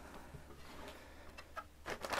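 Faint clicks and taps of a riveted aluminum wall-section sample being handled and turned over, a few light ticks in the second half, over a low steady hum.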